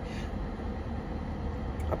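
Steady low rumble of a car heard from inside its cabin, with no speech over it.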